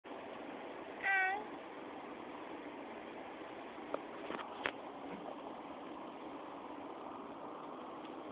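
A toddler's short, high-pitched squeal about a second in, then a few faint clicks over a steady background hiss.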